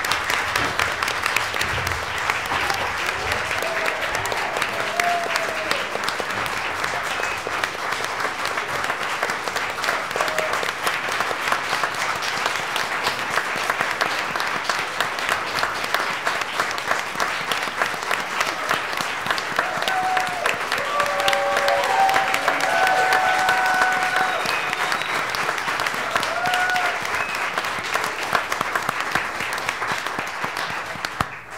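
A roomful of people applauding: sustained hand-clapping that swells a little about two-thirds of the way through.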